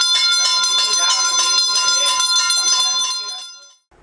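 A temple bell ringing continuously during a harati (camphor-lamp offering), with voices beneath it; the sound fades out shortly before the end.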